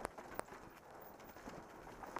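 Mountain bike rolling down a loose dirt trail: a steady crunch of tyres on dirt, with a few sharp knocks and rattles from the bike over bumps.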